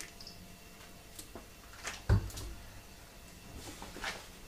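Handling of a plastic cooking-oil bottle after pouring: a few light clicks and one dull thump about two seconds in, as the bottle is put down.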